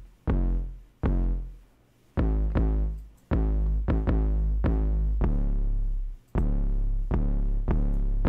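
Deep synthesized bass line played on its own from a DAW: a run of about ten low notes, each starting with a sharp attack, some cut short and some held before they fade.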